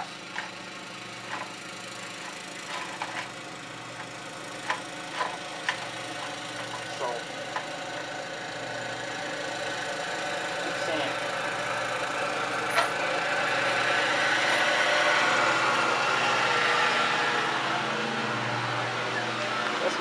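A distant engine sound slowly grows louder over several seconds, peaks past the middle, then eases off. A few light clicks come in the first half.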